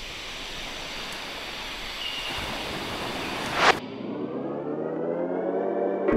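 Interlude between tracks on a lo-fi beat tape. A steady hiss of noise with no beat runs for nearly four seconds and ends in a brief loud swell. Then a muffled tone with several overtones rises steadily in pitch over the last two seconds.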